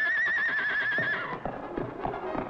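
A cartoon horse whinny: one high, wavering call that rises in and holds for about a second, with music beneath.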